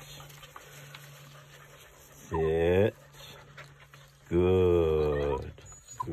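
A man's low voice holding two long, steady, drawn-out tones, a short one a little over two seconds in and a longer one of over a second past the four-second mark.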